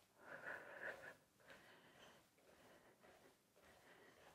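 Near silence: a faint breath from the woman marching on the spot in the first second, then quiet room tone.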